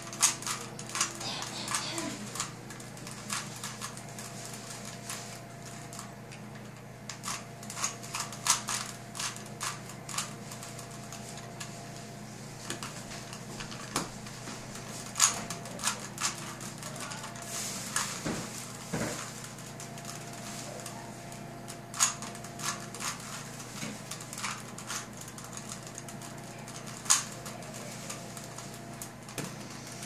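Plastic 3x3 Rubik's cube being turned by hand during a solve: irregular clicking and clacking of the layers in quick flurries with short pauses, and a few sharper clacks. A steady low hum runs underneath.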